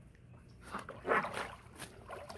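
Alaskan Malamute swimming, giving one short vocal sound about a second in, with water sloshing and splashing as it paddles to the pool edge.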